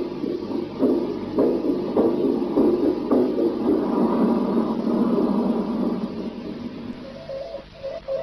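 Old radio intercept recording played off tape: a muffled, rhythmic thumping under hiss, about one and a half beats a second. It is the signal said to be the heartbeat of a man aboard a Soviet spacecraft in 1961. Near the end a steady tone comes in.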